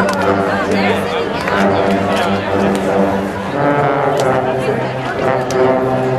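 Marching band brass with sousaphones playing held low chords, moving to a new chord about midway, with people talking close to the microphone over the music.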